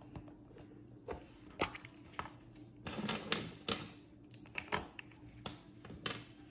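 Hollow plastic Easter eggs and wrapped Starburst candies being handled and set down on a tabletop: a string of irregular light clicks and taps, with a faint steady hum underneath.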